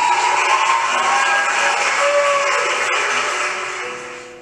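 Logo sting sound effect: a dense noisy rush that starts suddenly, with a few faint wavering tones in it, fading slowly over about four seconds.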